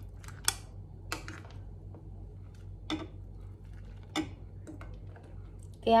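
Ladle clinking against a cooking pot and a ceramic bowl while soup is ladled from one into the other: about five sharp clicks spread a second or so apart, over a steady low hum.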